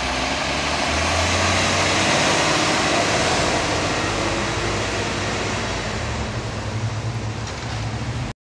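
A flatbed delivery truck driving past, its engine running with a low hum and road noise that swells about two to three seconds in, then eases off.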